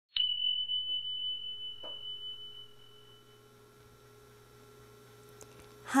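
A single struck bell-like tone, high-pitched, ringing out and fading with a slight waver over about three seconds. A faint steady hum runs underneath.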